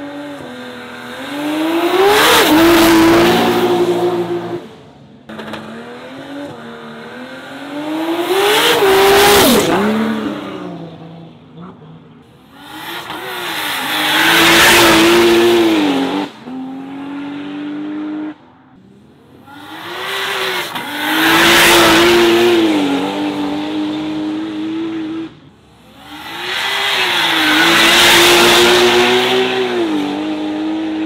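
Drag cars launching: five times an engine revs up hard with a rising pitch and holds high revs under full throttle, with tyre squeal and spin from the rear tyres. Each loud burst breaks off abruptly into quieter engine running.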